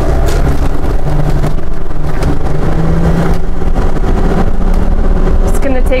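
Cabin noise of a 2017 Jayco Precept 31UL class A motorhome under way: a steady engine and road rumble, the engine note rising a little partway through and then settling back.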